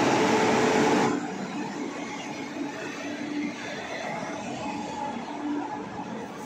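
Electric-locomotive-hauled passenger train moving alongside a station platform: a loud rush of noise for about the first second, then a steadier running rumble with faint humming tones.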